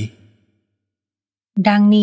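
Thai-language spoken narration only. A sentence trails off at the start, there is about a second of silence, and the voice starts the next phrase near the end.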